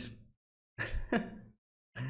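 A man's short laughter: the tail of one laugh right at the start, then a brief breathy laugh about a second in, with dead silence between.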